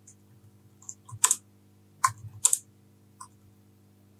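Typing on a computer keyboard: about half a dozen irregular keystrokes, a few quick clicks at a time, over a low steady hum.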